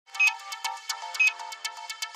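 Electronic intro jingle for an animated logo: quick, bright, evenly repeated notes, about eight a second, with a louder high chime about once a second.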